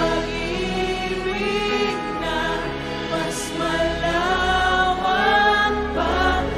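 Live worship band playing a Tagalog praise song: a lead female voice and backing singers hold a slow melody over keyboard, bass and drums, with a cymbal hit about halfway through.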